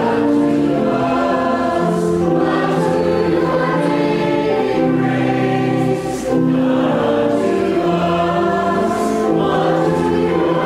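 A choir singing in held chords that change every second or so.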